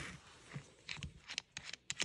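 Cordless drill being handled, with a run of short, sharp clicks in the second half as its keyless chuck is gripped and turned.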